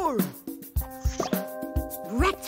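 Upbeat children's cartoon music with a steady drum beat and a held synth chord, with a short cartoon plop sound effect. A voice slides steeply down in pitch right at the start.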